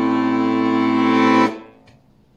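Rubin bayan (Russian button accordion) holding a steady A minor chord on its left-hand buttons. The chord stops abruptly about one and a half seconds in.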